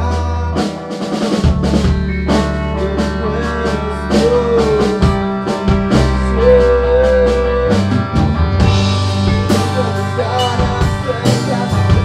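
A rock band rehearsing, picked up by a phone's microphone in the room: a drum kit keeps a steady beat under long, deep bass notes that change every couple of seconds. A wavering melody line is held twice over it, near the middle of the stretch.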